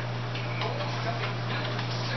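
A steady low hum over faint background noise.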